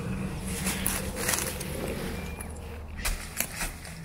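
Rustling, scuffing and a few knocks as a person climbs down through the hatch into a metal gun turret, with clothing and dry leaves brushing. The knocks come in two clusters, about half a second in and again around three seconds in.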